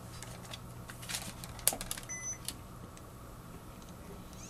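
Handheld camcorder being picked up and handled: a few light plastic clicks and knocks, with a short faint electronic beep about two seconds in, over a low steady hum.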